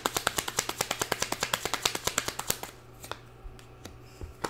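Tarot deck being shuffled in the hands: a fast, even run of card clicks, about ten a second, that stops a little before three seconds in, followed by a few single clicks as cards are handled.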